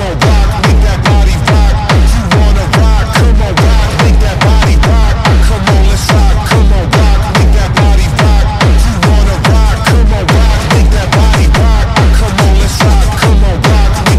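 Techno music with a heavy, steady kick drum a little over two beats a second and synth notes that slide down in pitch.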